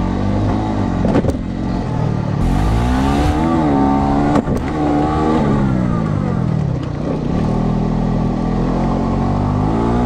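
A Honda Pioneer UTV engine revving up and down as it drives, its pitch climbing and falling several times. There are two sharp knocks, about a second in and near the middle.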